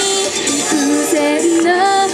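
Female vocalists singing a pop song live into handheld microphones over a backing track.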